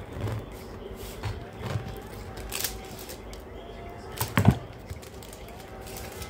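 Serrated bread knife sawing through the crust of a freshly baked loaf of beer bread in a few short strokes, with one sharp knock about four and a half seconds in, the loudest sound.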